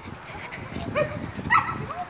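A dog barking a few short times, strongest about a second in and again halfway through, over the low thuds and rustle of someone walking with the phone.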